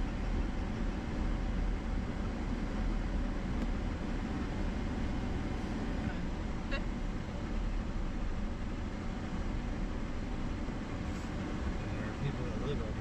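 Steady low rumble inside the cabin of a Chevrolet Silverado pickup driving slowly on a gravel road: tyre and road noise with the engine running underneath, and a few faint ticks about six to seven seconds in.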